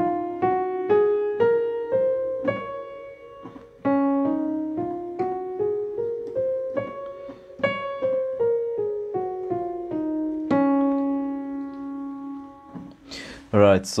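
Piano played one note at a time, running a scale up about an octave and back down twice, then a low note held and left to ring for about two seconds.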